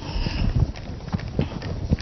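A whiteboard being wiped with a duster: rubbing strokes across the board with several dull knocks.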